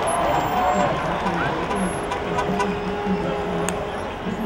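Busy city street ambience: many voices mixed with traffic, and music playing.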